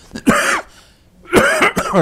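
A man coughing twice, two short, loud coughs about a second apart.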